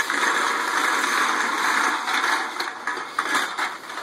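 A large clear plastic bag full of empty aluminium Diet Coke cans being grabbed and hoisted: loud plastic rustling with the cans clattering inside. It is steady for about the first two seconds, then breaks into shorter crinkles and clinks.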